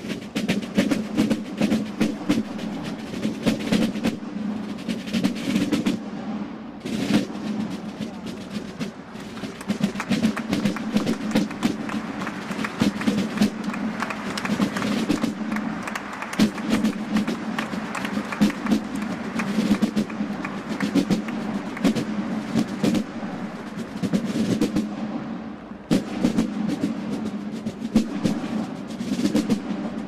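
A corps of Basel drums, rope-tensioned wooden-shell field drums, played together in Basler drumming style: dense, rapid strokes that run on with a couple of short, quieter breaks.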